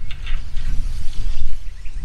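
Steady low rumble of wind on the microphone, with faint rustling and light clicks as high-tensile electric fence wire is handled.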